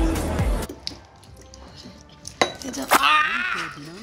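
Background music with a beat that cuts off under a second in. Then quiet dinner-table sounds: two sharp clinks of tableware, and a short wordless voice sound that rises and falls near the end.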